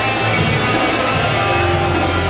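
Live worship band playing a song, with guitars prominent over steady, sustained low notes.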